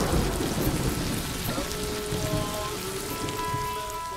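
Heavy rain pouring down steadily, with the low rumble of a thunderclap fading away under it. Faint held musical tones come in about halfway through.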